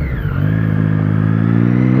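Motorcycle engine heard from the rider's seat. Its note falls away briefly at first, then it pulls steadily, its pitch slowly rising as the bike accelerates.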